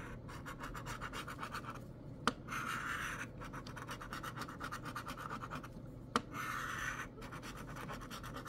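A large metal coin scratching the coating off a scratch-off lottery ticket in quick, rapid strokes, with a few short pauses. Two sharp clicks, about two seconds in and again about six seconds in.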